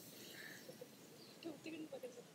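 Near silence: a faint outdoor background with a few faint, brief sounds in the second half.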